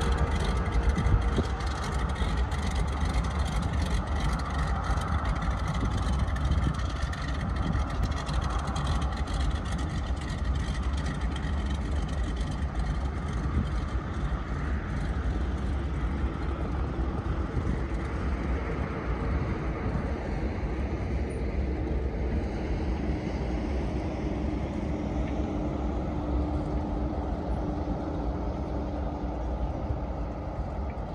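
Single-engine floatplane's engine and propeller running steadily as it taxis on the water, heard from a distance. A faint steady hum becomes clearer in the second half.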